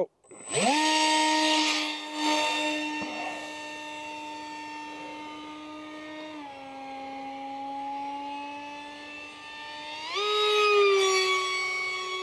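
Electric park jet's Fasttech 2212/6 2700 Kv brushless outrunner motor spinning an RC Timer 6x3x3 three-blade carbon prop. It spools up sharply at launch to a steady high whine, drops slightly in pitch about six seconds in, and rises again about ten seconds in. It runs louder than usual, which the pilot puts down to the frozen foam and prop making funny harmonics.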